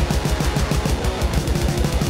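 Heavy metal instrumental passage: distorted electric guitar over a fast, even kick-drum beat, with no vocals.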